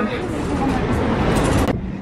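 Busy street and crowd noise at a tram stop: a loud, even rumble and hiss of traffic and people moving, with only faint voices. It cuts off suddenly near the end.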